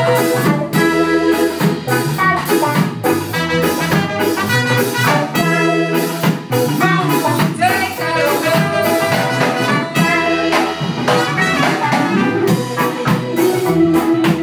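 A live reggae and ska band playing an instrumental groove: a trumpet plays the lead line over electric guitars, keyboard and drums keeping a steady beat.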